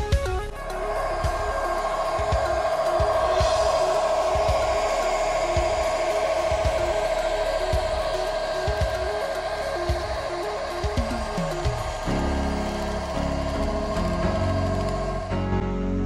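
Sound decoder of an ESU H0-scale Class 77 diesel locomotive model playing its running-engine sound, a steady high whine and drone through the model's small speaker as the train runs past. Background music with a beat plays underneath.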